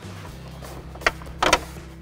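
Plastic dash trim panel of a 1996 GMC Sierra being pried loose by hand: a single sharp click about a second in, then a short cluster of snaps half a second later as the retaining clips let go. Quiet background music runs underneath.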